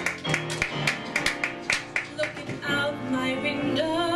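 Grand piano playing an accompaniment of quick, sharply struck chords, settling into held notes in the last second or so.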